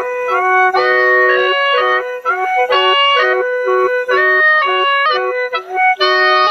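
Lahu naw, a gourd mouth organ with bamboo pipes, playing a melody over several notes held together, the notes changing in quick steps with brief breaths between phrases.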